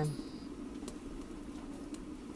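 Pine-cone-fired samovar coming to the boil: a steady low rumble from the burning firebox and the heating water, with a couple of faint crackles.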